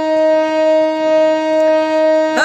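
Harmonium holding one steady reed note between sung lines, unwavering in pitch, before the voice comes back in just after the end.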